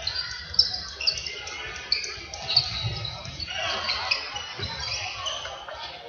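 Indoor hall football in play: a ball kicked and bouncing with sharp, echoing knocks, a few seconds apart, against a steady murmur of spectators' voices. Short high squeaks, likely shoes on the hall floor, come in between.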